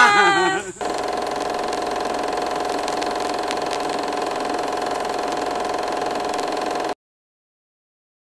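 Group of people cheering and shouting, then a steady engine-like hum at constant pitch and level for about six seconds that cuts off abruptly.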